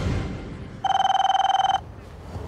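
A mobile phone ringing: one trilling electronic ring about a second long, starting about a second in and cutting off cleanly.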